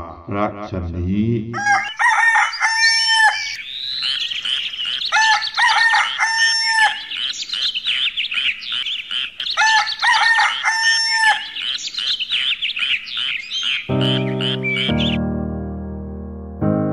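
Birds chirping densely and rapidly, with a longer pitched call coming three times, laid in as a nature sound bed. Piano chords come in near the end as the birdsong stops.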